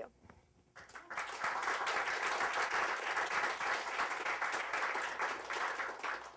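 Audience applauding, starting about a second in after a brief quiet and running on steadily.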